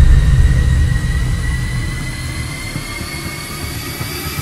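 Trailer sound-design drone: a deep rumble under several thin, high tones that slowly rise in pitch, fading gradually.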